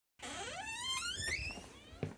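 Door hinge squeaking as a door is pushed open: one long squeak that rises steadily in pitch for about a second and a half, then fades.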